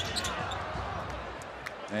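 Basketball arena ambience during live play: a steady crowd murmur, with a few short sharp knocks and squeaks from the court near the start and once more near the end.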